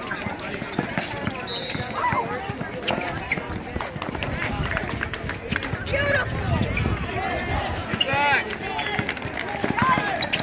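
Outdoor blacktop basketball game: players' running footsteps and sneaker scuffs on the court and a ball bouncing, under voices from players and spectators, with a few shouts, one about eight seconds in.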